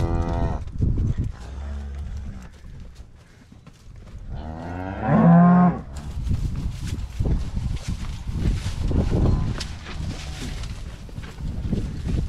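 Cattle bawling at weaning, as calves are separated from their mothers: a long moo trails off at the very start and a second, loudest moo comes about four and a half seconds in. After it comes a steady run of scuffing hoofsteps from the calves walking over dirt and hay.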